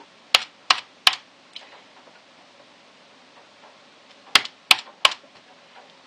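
Sharp clicks in two groups of three, about a third of a second apart within each group. The first group is near the start and the second about four seconds in.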